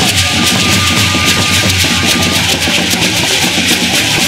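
Many calabash gourd rattles shaken together in a quick, even beat with drumming underneath, loud and harsh, and a thin high note held for the first couple of seconds.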